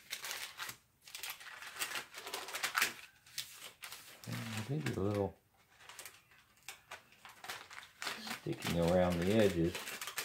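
Paper and thin plastic sheet crinkling and rustling as a taped transfer sheet is peeled off a freshly heat-pressed sublimation ornament, busiest in the first three seconds. A man's voice sounds briefly twice, about four seconds in and near the end, without clear words.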